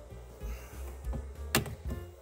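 Soft background music, with light handling of plastic trim pieces and one sharp click about one and a half seconds in as the parts of the cabin-filter housing are fitted by hand.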